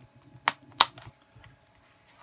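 Two sharp clicks about a third of a second apart, with a little faint handling after: a small metal binder clip being fitted to the edge of a scorecard on a card holder.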